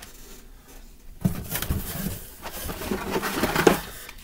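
Hands rummaging in a cardboard shipping case of carded Hot Wheels cars: blister-packed cards rustling, scraping and clacking against each other and the cardboard. It starts about a second in, with the sharpest click near the end.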